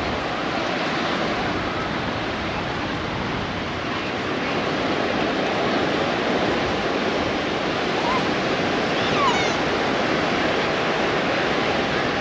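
Steady rush of surf breaking and washing up along a sandy beach.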